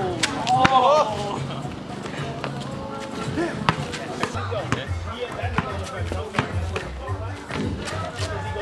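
Background music, its pulsing bass beat coming in about halfway, over the sharp thuds of a basketball bouncing on street asphalt, with brief shouts from players near the start.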